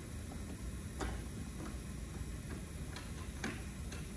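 A few separate light clicks and knocks from someone walking up to and handling a wheeled plywood exhibit cabinet, over a steady low hum.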